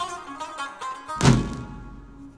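Instrumental Iranian folk ensemble music: plucked string notes over a held low note, with one loud, deep drum stroke a little over a second in.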